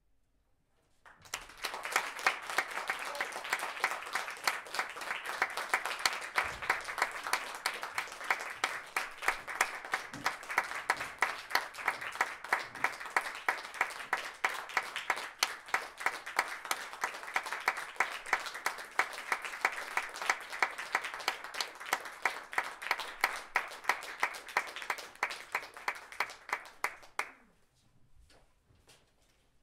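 A small audience applauding: dense, steady clapping that starts about a second in, with one close clapper's sharp claps standing out at an even beat. It stops just before the end.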